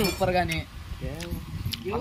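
Men's voices with three light metallic clinks in the middle, a metal ladle knocking against an aluminium cooking pot.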